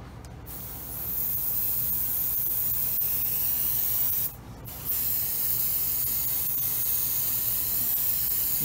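Neo for Iwata TRN1 trigger airbrush spraying paint in a steady hiss of air and paint. The hiss builds over about the first second, stops briefly a little past four seconds in, then starts again.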